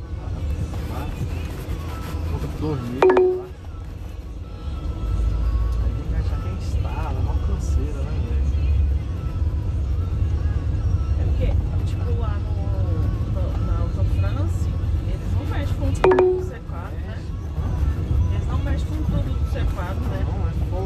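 Low, steady rumble of a car driving slowly, heard from inside the cabin, with faint voices or radio under it. Two brief sliding tones stand out, about three seconds in and again near sixteen seconds.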